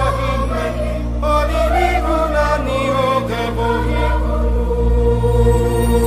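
Background music: a sung vocal melody over sustained low chords.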